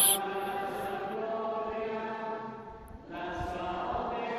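Church music: a long, steadily held chant-like note, then a brief break about three seconds in and another held note, quieter than the narration around it.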